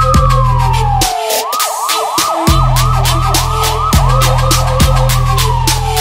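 Electronic police siren: a wail falling in pitch, then a fast yelp of about three up-and-down sweeps a second, then falling again near the end. It is laid over electronic music with heavy bass and drums, and the bass drops out briefly about a second in.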